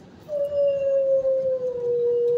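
A dog howling: one long, loud howl held at a nearly steady pitch that sinks slightly, starting about a third of a second in.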